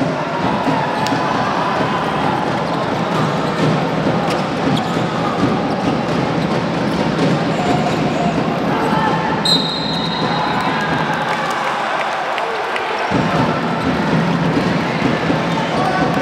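Basketball game sound in a gym hall: a ball dribbling on a hardwood court, with sneaker squeaks and crowd chatter. A short, high whistle blast sounds about nine and a half seconds in.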